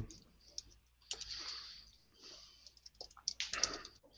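Faint typing on a computer keyboard: a few short clusters of quick keystrokes, the busiest near the end.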